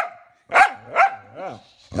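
Corgi "talking": a run of short pitched yowling barks, three of them about half a second apart, each bending up and down in pitch.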